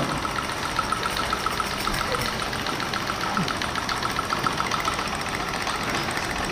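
Small gamma-type Stirling engine running on an alcohol flame, giving a steady, rapid, even mechanical ticking.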